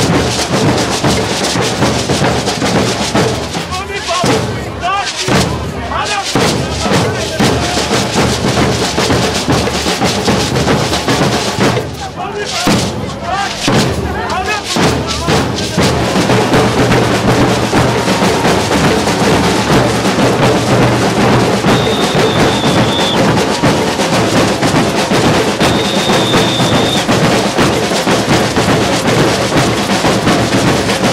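Maracatu percussion group playing a dense, steady rhythm on alfaias (large rope-tensioned wooden bass drums) and snare drums, with voices over the drumming in the first half. Two long, high whistle notes sound in the second half, a few seconds apart.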